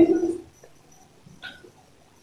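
A woman wailing in grief: one long, loud crying wail that breaks off about half a second in, followed by a short, faint sob near the middle.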